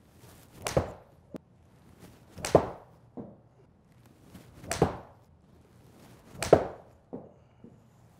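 Golf 7-iron striking balls off a hitting mat, four sharp strikes about two seconds apart, each followed by a fainter knock.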